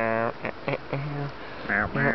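A man singing a comic tune without clear words, in short separate notes that jump between low and high pitch.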